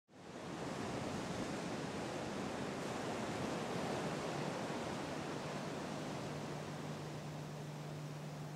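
Steady ocean surf ambience, fading in at the start. A low steady hum joins it about five and a half seconds in.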